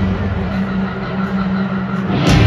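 Rock band's low sustained chord or drone ringing steadily through the stadium sound system over crowd noise, in a short gap between a hit just before and the full band coming back in with electric guitar.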